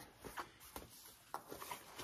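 Faint handling of a fabric compression packing cube with zippers: soft rustling and a few light clicks.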